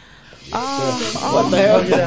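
A brief hushed gap with a faint hiss, then about half a second in several voices break in at once, exclaiming and talking over each other.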